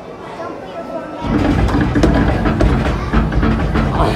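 Earthquake simulator starting up about a second in: a sudden loud, deep sound with a music-like soundtrack and repeated knocks, held as the platform shakes.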